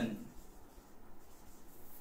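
Faint sound of handwriting, an implement moving over a writing surface, with low room noise.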